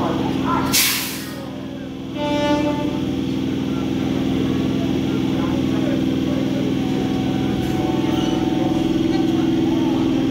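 Electric multiple-unit local train at a platform, its equipment humming steadily, with a short loud hiss of released air about a second in, typical of the brakes letting off. A brief high tone sounds about two seconds in, and the train starts to pull away.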